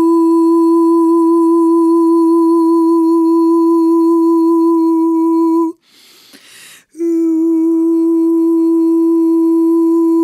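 A woman's voice humming one long steady note with a slight waver. It breaks off about six seconds in for a breath lasting about a second, then takes up the same note again.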